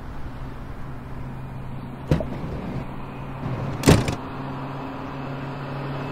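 A car engine idling steadily, with two car-door thuds, one about two seconds in and a louder one about four seconds in.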